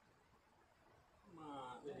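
Near silence, then a man starts speaking about a second and a half in.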